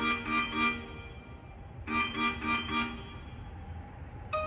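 Hankyu station platform chime melody warning of an approaching train that will pass without stopping. A bright electronic phrase of quick repeated chords plays twice, the second about two seconds in.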